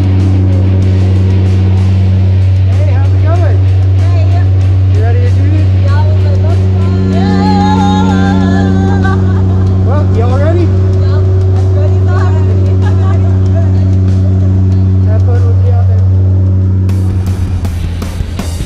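Steady drone of the jump plane's propeller engines heard inside the cabin, with people's voices shouting over it. Music comes in near the end.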